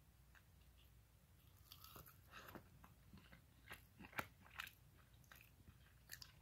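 Faint crunching and chewing of a breaded jalapeno tater tot: scattered small crunches begin about two seconds in, the sharpest about four seconds in.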